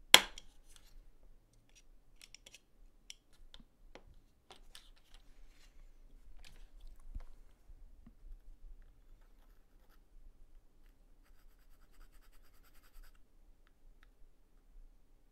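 A sharp click just after the start, then light clicks and taps of hard plastic model-kit parts being handled, and a brief scraping about twelve seconds in as a metal needle file is worked against a plastic part.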